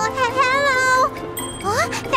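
A cartoon voice draws out a hesitant "uh" for about a second over light background music. A brief high chime follows, then short rising vocal sounds near the end.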